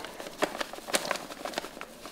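Gypsum filler powder pouring from its paper bag into a small plastic pot, with a faint hiss and irregular crackles and rustles of the paper bag.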